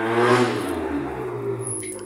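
A motor vehicle passing by, its engine noise swelling early on and then fading away.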